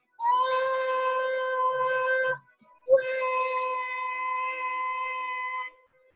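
A young woman singing two long held high notes at nearly the same pitch, separated by a short breath, the second starting with a sharp attack about three seconds in.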